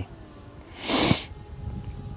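A single sharp sniff from a man, about a second in, lasting about half a second.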